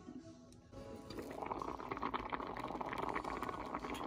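Pot of rice in bouillon water bubbling as it cooks, a steady crackly simmer that starts about a second in and grows slightly louder.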